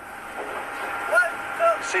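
Steady machinery hum of a fishing boat at sea, with two short voice sounds from the crew about a second in and near the end.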